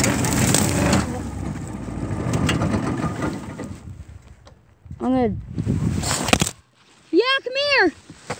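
A go-kart's small engine runs with a rumble that fades out over the first four seconds. Then come short calls that rise and fall in pitch, one about five seconds in and two close together near the end.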